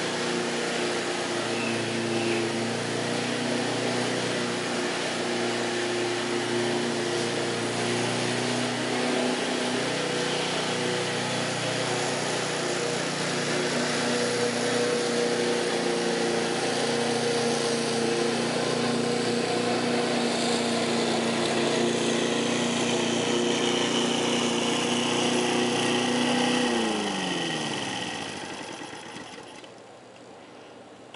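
Briggs & Stratton engine of a walk-behind rotary lawn mower running at a steady speed while mowing. About 27 seconds in it is shut off and winds down, its pitch falling until it stops.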